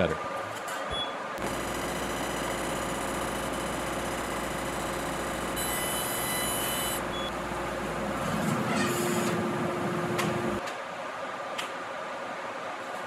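Laser cutter running as it cuts leather: steady machine noise with a low hum that starts about a second and a half in, a brief high hiss near the middle, and a stop about two thirds of the way through, followed by quieter room noise.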